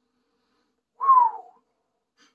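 A single sharp sniff through one nostril, about a second in, with a whistling tone that falls in pitch over about half a second.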